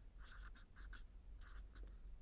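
Faint, quick strokes of a marker pen writing: a run of short scratches as letters are drawn.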